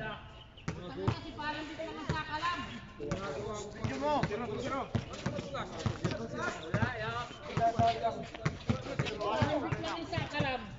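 Basketball bouncing on a hard court, many irregular bounces, with players' voices calling out over them.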